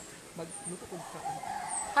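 A rooster crowing, its long held call starting about halfway through, over faint voices.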